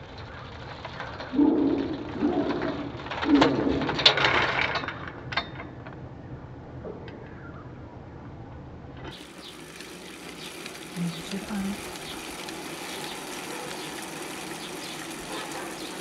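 Low bird calls in two short clusters of notes in the first few seconds, over background noise. About nine seconds in, the sound changes abruptly to a steady hiss.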